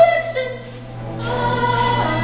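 A woman singing a musical-theatre song on stage: one phrase ends just after the start, a short lull follows, then a new held note begins a little past the middle.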